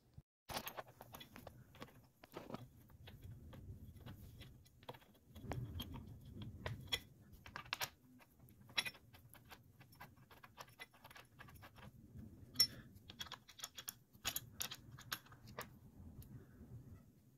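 Faint, irregular small metallic clicks and ticks from a steel Allen wrench turning screws into a metal leg bracket, with soft handling rubs in between.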